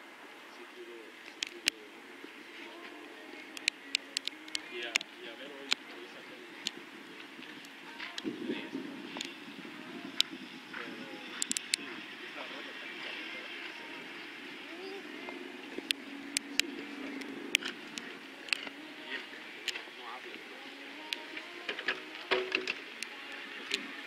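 Background chatter of spectators' voices, with many scattered sharp clicks and knocks, clustered around four to five seconds in and again near the end.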